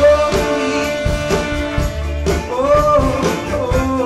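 Live indie rock band playing: electric guitars, bass, drums and a horn section, with a long held lead melody that scoops up into its notes twice.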